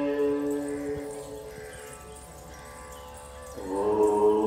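Devotional chant music: a long held chanted note that fades away, then a new chanted phrase comes in near the end.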